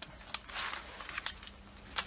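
Plastic wiring connector snapping together with one sharp click shortly after the start, followed by brief rustling of the cable being handled and a few faint ticks.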